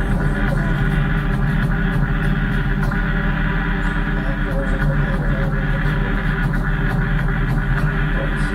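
A live band jam playing dense, sustained, layered tones over a steady low hum, at an even loudness throughout.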